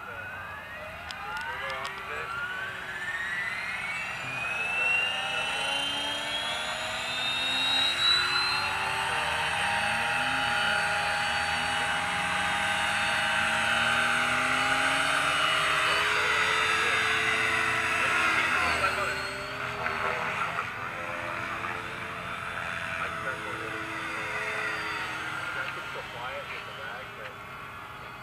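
Align T-Rex 550 electric RC helicopter spooling up: a rising whine from its motor and rotor over the first eight seconds or so, then a steady whine as the rotor holds its speed and the helicopter flies. The pitch wavers in the last part.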